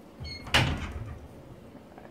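A brief squeak, then a single sharp household knock about half a second in that dies away over about half a second.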